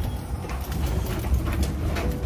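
Steady low rumble of a cargo van's engine and road noise heard from inside the cab while driving, with a few faint clicks.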